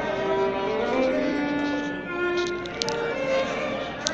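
Live violin playing a slow melody of long held notes, with acoustic guitar accompaniment. A few short sharp clicks come in about two and a half seconds in.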